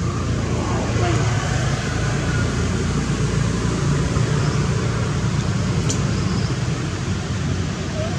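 A steady low rumble of outdoor background noise, with faint, indistinct voices in it and a single sharp click about six seconds in.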